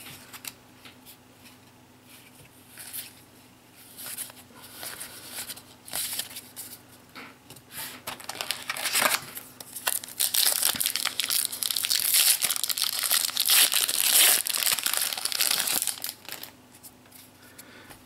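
Foil trading-card booster pack wrapper crinkling as it is handled, then a dense spell of crinkling and tearing from about ten seconds in as the pack is pulled open, lasting about six seconds.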